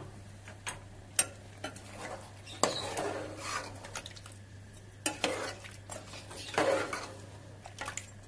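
Spoon stirring chicken and potatoes in a watery curry in a metal pot, with scattered clinks and scrapes against the pot.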